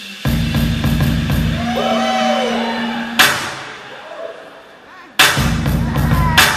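Hip hop dance routine mix played over the venue's sound system: a bass-heavy drum beat kicks in, breaks off with a loud crash about three seconds in, and after a quieter stretch the beat comes back suddenly near the end.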